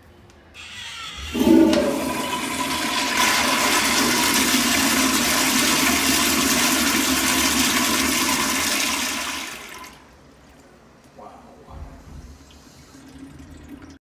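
1998 Kohler Wellcomme flushometer toilet flushing a load of toilet paper. A rush of water builds about a second in, runs steadily for about eight seconds, then fades away. A few faint knocks follow.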